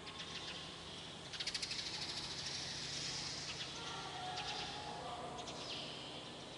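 Birds chirping, with a fast trill of high chirps about a second and a half in and scattered chirps afterwards, over a faint steady hum.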